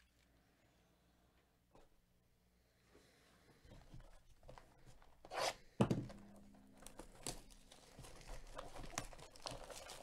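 Plastic shrink-wrap being torn off a sealed box of baseball cards: quiet handling at first, a loud tear about five and a half seconds in, then crinkling of the wrap.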